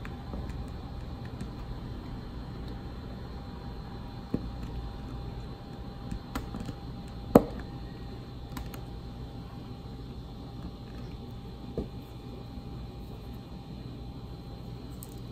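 A diamond painting drill pen tapping resin drills onto the adhesive canvas: a few scattered small clicks, the loudest about seven seconds in, over a steady low background hum.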